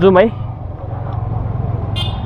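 Motorcycle engine running steadily at low speed in second gear, a low even hum, with a man's voice trailing off just at the start.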